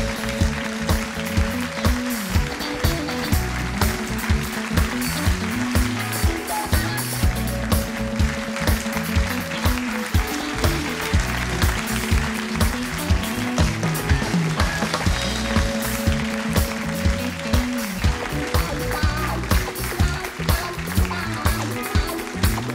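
Upbeat band music with a steady drum beat, about two beats a second, over a bass line and chords.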